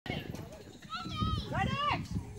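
Young children calling out in high voices, starting about a second in.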